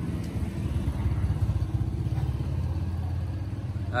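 A motor running steadily close by, a low rumble with a fast, even pulse.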